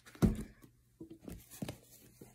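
Handling noise as books are moved about: one thump about a quarter second in, then a few faint knocks and rustles.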